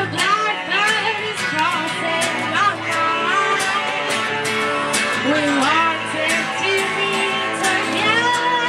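Live rock band with a harmonica played through the vocal microphone, its lead line bending up and down in pitch over strummed acoustic and electric guitars.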